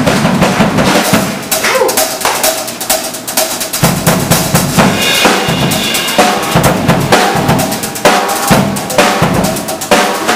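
Live blues band playing with the drum kit to the fore: bass drum, snare and rimshots, with pitched instruments underneath. The playing drops quieter about a second and a half in and builds back up about four seconds in.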